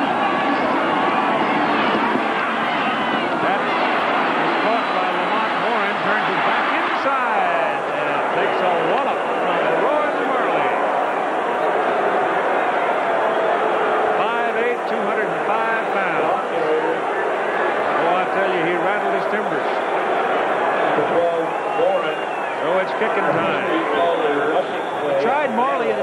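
Stadium crowd noise: a steady, dense din of many voices through a TV broadcast mix.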